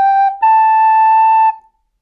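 Plastic soprano recorder finishing a G and stepping up to a held A, the last notes of a slow F-sharp, G, A phrase. The A sounds for about a second and stops about a second and a half in.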